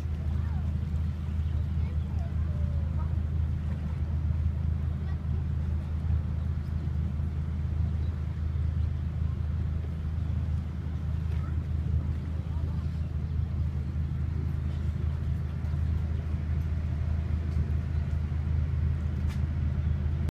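A passenger ship's engine running with a steady low drone as the boat gets under way, heard from the open deck.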